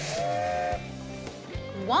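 Steam locomotive whistle blowing one short blast, a chord of several notes at once, in the first second, with a hiss of steam, over background music.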